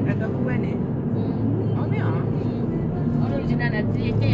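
Steady low drone of road and engine noise inside a moving car's cabin.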